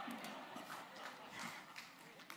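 Faint, scattered hand clapping from a congregation at the end of a sermon, with murmuring room noise.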